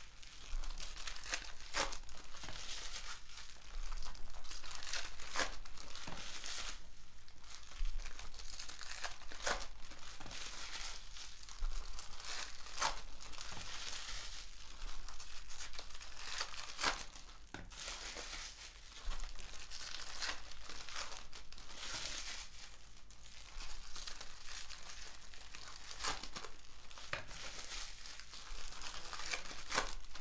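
Foil trading-card pack wrappers being torn open and crinkled by hand: a continuous crinkling of foil with sharp tearing rips at irregular intervals.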